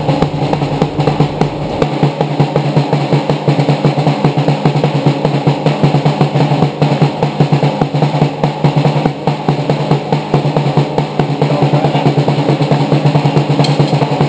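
Music driven by fast, dense drum-kit playing, with a steady low note held underneath.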